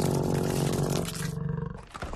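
Cartoon monster roar sound effect: one loud, rough roar lasting about a second and a half, then dying away near the end.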